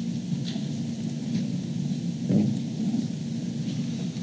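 Low, steady rumble of background noise in a large meeting hall, with a few faint, brief sounds standing out.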